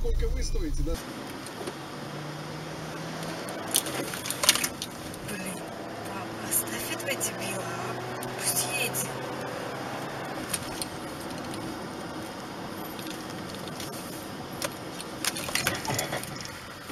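Inside a moving car: steady road and engine noise, with scattered light clicks and rattles from the cabin.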